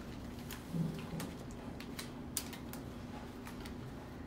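Irregular light clicks and snaps of leaves being stripped by hand from pink rubrum lily stems, over a steady low hum.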